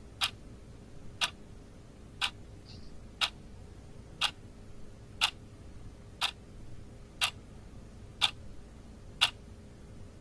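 Stopwatch ticking sound effect, one tick a second, counting down the time for a timed exercise, over a faint steady hum.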